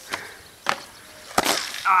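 Two footfalls on a wooden bench, then a heavy thud and scuffle as a person lands badly on the grass from a failed front flip. A short cry of pain follows near the end.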